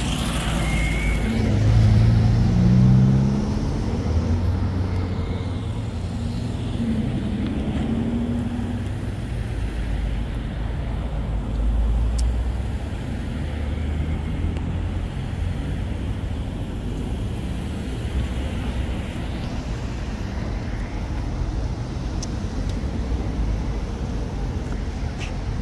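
Highway traffic passing close by, with engine and tyre noise as a steady rumble. Louder vehicles go past about two seconds in, around eight seconds, and again around twelve seconds.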